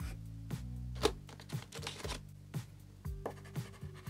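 Water-soluble wax crayon (Lyra Aquacolor) scratching in short, quick strokes across black paper, over quiet background music with held low notes.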